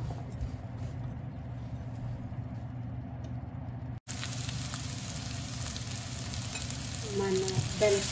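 Diced red bell peppers frying in oil in a pan, a soft sizzle with light scraping clicks from a silicone spatula stirring them. After an abrupt cut about four seconds in, the sizzle is louder and hissier over a steady low hum.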